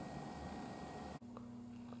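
Faint room tone with hiss. A little over a second in it cuts off with a click and gives way to a different, quieter background with a steady low hum.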